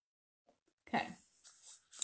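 Total silence for about the first second, then a short vocal sound that falls in pitch, followed by fainter breathy sounds.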